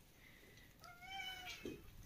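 A domestic cat meowing once, faintly: a single slightly arching call of under a second, starting about a second in.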